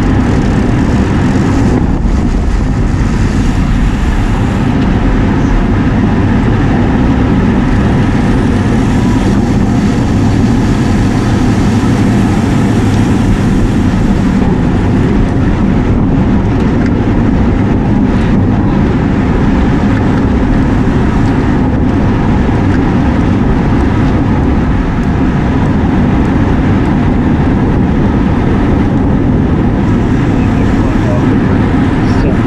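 Wind and road noise rushing over a bike-mounted action camera's microphone while riding at race speed in a pack of cyclists: a loud, steady low rumble.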